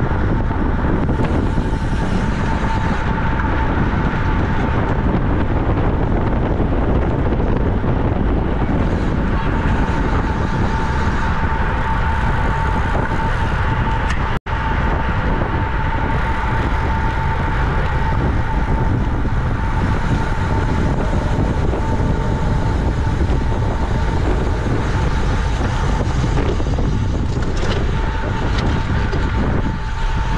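Wind rushing over a bike-mounted camera's microphone during road racing at about 25 mph, with tyre and road noise under it and a thin steady whine throughout. The sound cuts out for an instant about halfway through.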